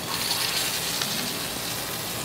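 Lamb chops sizzling steadily in hot duck fat in a steel frying pan as the raw meat goes into the fat.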